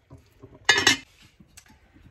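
A heavy red enamelled cast-iron pot lid clanks down onto its pot about two-thirds of a second in, a brief ringing clatter with two quick knocks.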